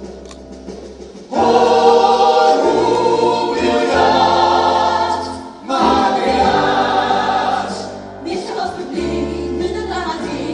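Musical-theatre number sung by a group of voices in sustained chords, softly at first, then coming in loudly about a second in.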